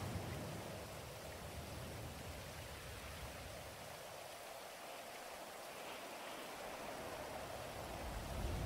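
Faint, steady rain ambience: an even hiss with no distinct events.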